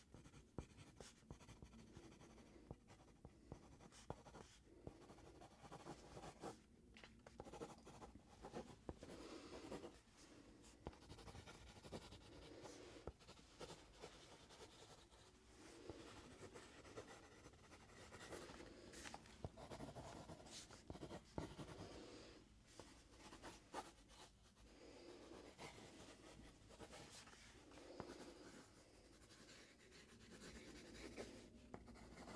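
Faint scratching strokes of drawing on sketchpad paper, coming in short runs with brief pauses.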